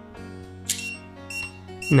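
Three short, high electronic beeps about half a second apart from an ISEO Zero1 electronic cylinder lock, signalling that Passage Mode has been enabled, over soft background music.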